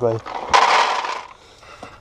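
Dry dog biscuits tipped into a plastic feed tray: a short, sudden rattling pour lasting under a second.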